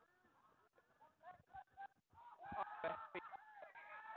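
Several voices shouting at once: faint talk at first, then from about halfway in a louder cluster of overlapping, drawn-out yells and calls from players and onlookers as a tackle is made.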